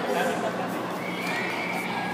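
Chatter of many people's voices, with a thin high-pitched sound held for under a second about a second in.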